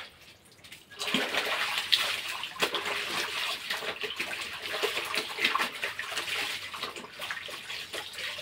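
Clothes being hand-washed in a plastic basin of water: wet cloth rubbed and wrung, with water sloshing, splashing and dripping back into the tub. It starts about a second in and goes on steadily.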